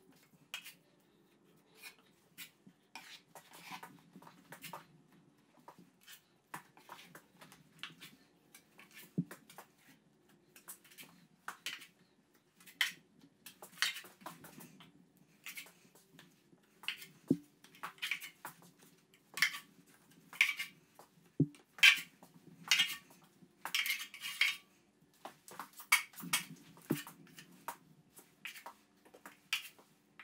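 Steel drywall taping knife scraping and spreading joint compound along a drywall corner: a long run of short, irregular scrapes and taps that grows louder about halfway through.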